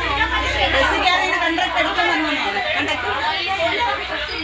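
People talking inside a bus cabin, the voices running on without a break, over a low rumble that is strongest in the first second.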